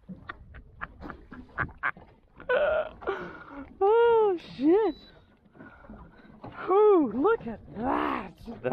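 A man's wordless vocal exclamations: drawn-out, high-pitched 'oh'-like calls that rise and fall in pitch, twice around the middle and again near the end.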